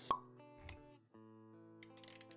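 Intro-sting music for an animated logo, with a sharp pop just after the start and a soft low thump a little later. After a brief dip, sustained chord notes come in.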